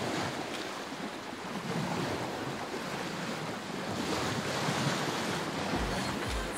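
Wind buffeting the microphone over the rush of open-ocean waves around a sailboat under sail.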